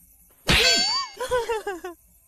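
A sudden ringing metallic clang, like a ding sound effect, about half a second in. A voice-like pitch glides up and down over it, followed by a few short vocal syllables.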